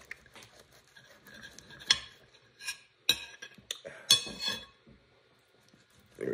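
A table knife cutting small air-fried pizzas on a plate: irregular scraping, with sharp clinks of the blade on the plate about two, three and four seconds in.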